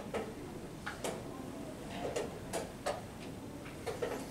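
Irregular light clicks and knocks, about seven spread through a few seconds over low room noise, typical of wooden chess pieces being set down and chess clocks being pressed at the games around a tournament hall.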